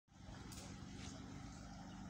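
Faint outdoor background: a low, steady rumble with two faint soft ticks, about half a second and a second in.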